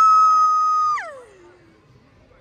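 A single high-pitched vocal squeal held on one steady note for about a second, then sliding down in pitch and fading out.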